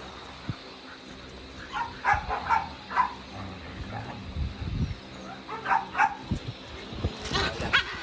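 Dogs at rough play, giving short high calls in three clusters: about two seconds in, around six seconds, and near the end.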